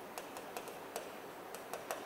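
Chalk tapping and scratching on a chalkboard as numbers are written: a run of light, irregular clicks, the sharpest near the end.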